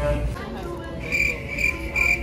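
Short, high electronic beeps repeating about twice a second, starting about halfway through.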